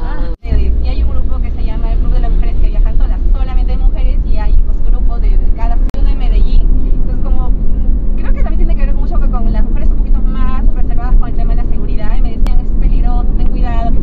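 Mostly conversation in Spanish inside a car, over the steady low rumble of the car driving, heard from within the cabin.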